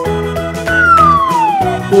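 Upbeat children's background music with a steady beat. About two-thirds of a second in, a whistle-like tone slides slowly downward for about a second.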